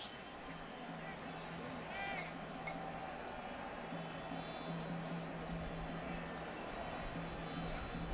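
Stadium crowd noise, a steady murmur from the stands during a first-down measurement, under a steady low hum, with one brief raised voice about two seconds in.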